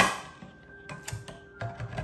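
Handheld manual can opener biting into the lid of a can of evaporated milk with a sharp click, then a few softer clicks as its key is turned. Soft background music with held notes plays underneath.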